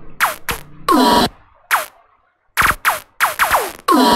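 Glitchy electronic sound effects from a remix beat playing back: a stuttering string of short zaps, most sweeping quickly downward in pitch, broken by a brief silence about two seconds in.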